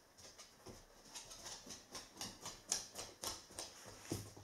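A Goldendoodle's claws clicking on a wooden floor as it walks off: a faint, quick, irregular run of ticks.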